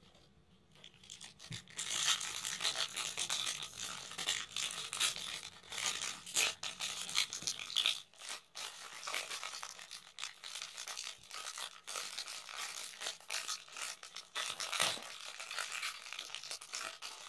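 Foil wrapper of a Panini Prizm soccer card pack crinkling and rustling as it is handled and opened by hand. It is a dense run of small crackles that starts about a second in.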